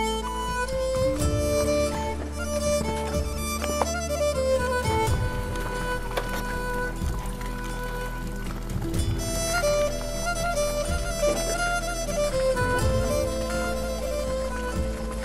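Background music with a bowed fiddle melody over a steady low drone.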